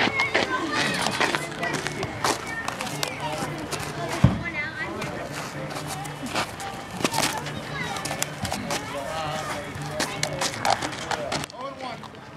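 Indistinct voices chattering in the background, with scattered clicks and knocks and one sharp thump about four seconds in.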